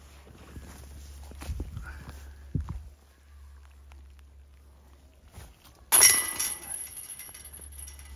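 Disc golf putt striking the basket's metal chains about six seconds in: a sudden metallic crash that rings on briefly as the disc drops into the basket. Before it, footsteps and rustling on the forest floor with a couple of dull knocks.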